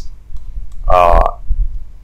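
A few faint computer keyboard or mouse clicks, then a short hummed vocal filler sound of about half a second, about a second in.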